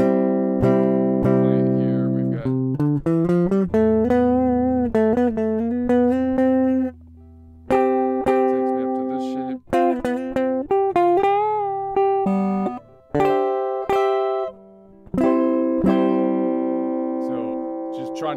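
Guitar playing a phrase of C major / A minor scale notes, each left ringing, sometimes two at once, with a wavering pitch on a few held notes. There are brief pauses between groups of notes.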